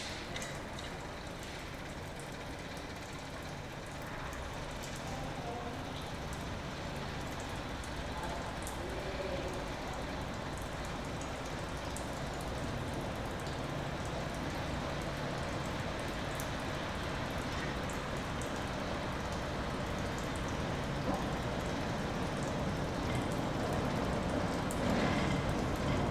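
Diesel shunting locomotive's engine running, a steady low hum with a noisy rumble that grows slowly louder.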